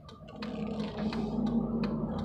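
Car cabin noise while driving: a low steady hum that grows louder about half a second in, with a few faint clicks.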